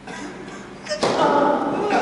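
A tennis ball struck hard by a racket about a second in, as a serve is hit, followed at once by a person's voice.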